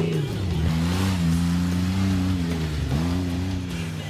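Competition rock-crawling buggy's engine running under load, its pitch dipping and coming back up about three times as the revs rise and fall.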